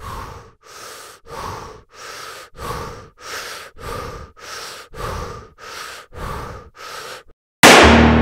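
A person breathing hard in quick, even breaths, about two a second. The breathing stops, and near the end a sudden loud hit rings on and fades.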